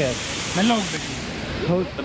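Waterfall rushing as a steady hiss, with short snatches of a voice calling out twice.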